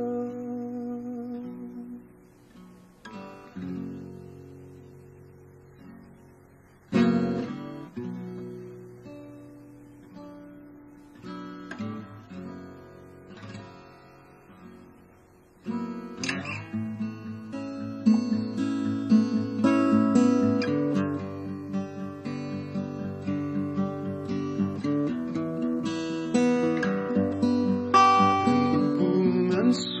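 Solo acoustic guitar playing an instrumental passage: a few single chords struck and left to ring and fade over the first half, then steady, faster picking starts about halfway through and carries on louder.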